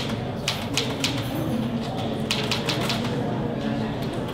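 Typing: irregular sharp keystroke clicks in small clusters, over a low murmur of indistinct voices.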